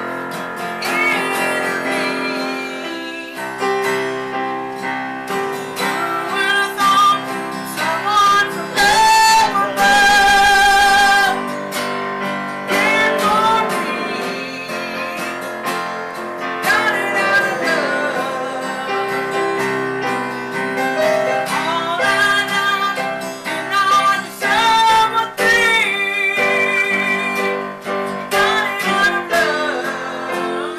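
A song with guitar accompaniment and a singing voice holding long notes with vibrato.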